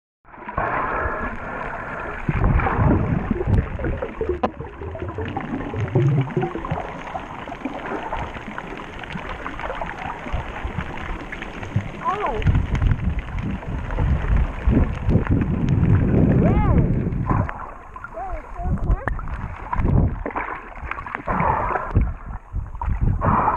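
Muffled underwater sound from a submerged camera: water moving and gurgling against the housing, with muffled, unintelligible voices and a few brief gliding squeaks.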